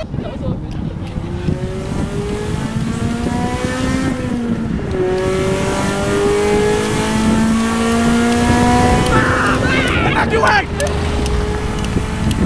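Air-cooled flat-four engine of a classic VW Beetle accelerating: its pitch climbs, drops back at a gear change about four to five seconds in, then climbs again. People riding on the car shout near the end.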